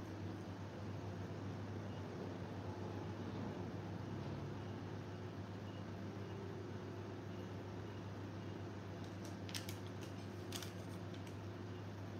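Steady low hum and faint hiss of room background noise, like a running fan, with a few faint clicks about nine and a half to ten and a half seconds in.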